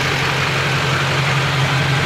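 A 2005 Duramax pickup's 6.6-litre V8 turbodiesel idling steadily, a constant low hum.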